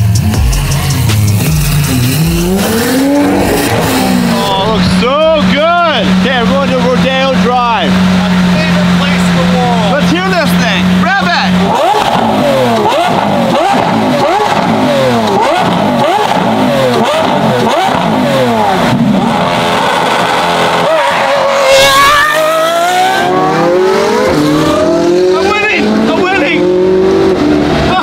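Lamborghini Aventador SVJ's V12 with a Gintani F1 exhaust, revved again and again in rising and falling sweeps and then pulling away under acceleration. One loudest sharp burst comes about three-quarters of the way through.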